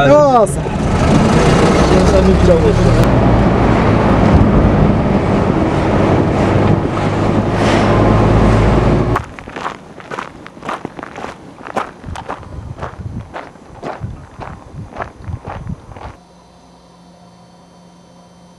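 Road and engine noise inside a moving Mercedes taxi, with a brief voice at the start. About nine seconds in it changes to footsteps on gravel, almost two steps a second, then a faint steady hum near the end.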